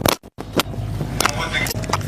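Engines of a slow-moving SUV convoy running at low speed, a steady low hum, with people's voices in the background. The sound drops out very briefly just after the start.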